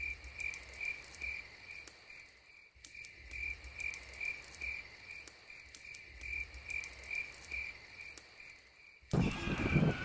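Steady rhythmic chirping of insects, like crickets, at about two and a half chirps a second, with fainter high clicks. About nine seconds in, a louder, noisier sound cuts in over it.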